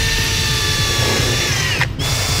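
Power drill running at speed, driving a cheap Harbor Freight titanium-coated twist bit through a car's sheet-metal deck lid; the motor's whine sags a little under load. The drill stops briefly near the end and starts again on the next hole.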